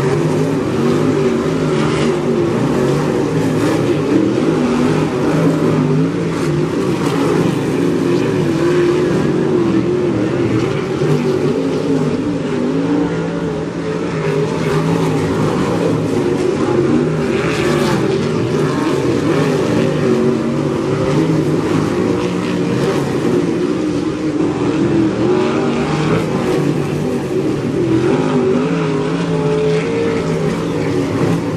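Dirt-track race car engines running at speed around the oval, their pitch wavering up and down continuously as the cars circle.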